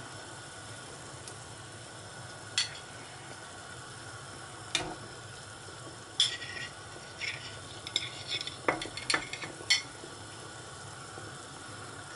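Lamb chops being laid into a pan of simmering stock: a steady low simmer, with scattered light clinks and taps of tongs and plate against the pan, most of them between about six and ten seconds in.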